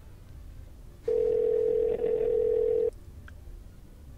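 Telephone ringback tone: one steady ring lasting about two seconds, starting about a second in, as an outgoing call waits to be answered.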